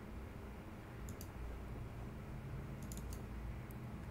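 Faint computer mouse clicks over a low steady room hum: a single click about a second in, then a quick double click near three seconds, followed by one more click.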